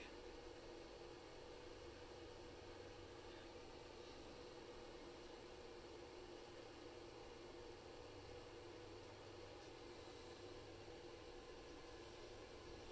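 Near silence, with a faint steady hum from the Breville air fryer oven running on broil.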